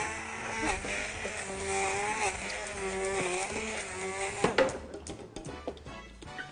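Hand-held immersion blender running in a beaker of dry ingredients, its motor whine wavering in pitch as the load changes, then switched off about four and a half seconds in.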